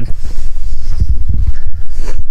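Wind buffeting the microphone as a loud low rumble, with footsteps on soft, stony field soil thudding every few tenths of a second.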